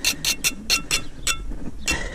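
Steel pointing trowel striking and scraping along lime mortar joints in brickwork in quick, short strokes, about four or five a second, each with a light metallic clink.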